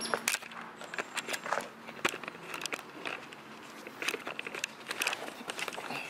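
Irregular clicks, scrapes and rustles as a handheld camera is moved about and a person shifts around on the ground.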